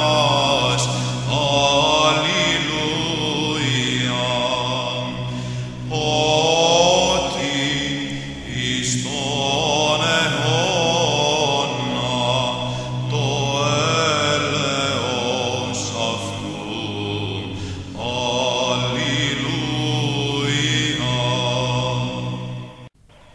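Orthodox church chant: a voice sings a slow melody in phrases with short breaks, over a steady held low drone.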